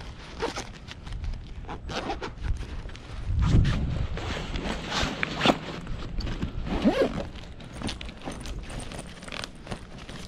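Zipper on a fully loaded backpack being worked closed in several short, effortful pulls, with scraping and rustling of the bag, and a dull low bump of handling about three and a half seconds in. The zipper is sticking on what is taken for a bent tooth.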